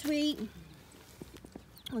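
A woman's voice finishing a word, then a short pause with a few faint, short clicks before she starts speaking again.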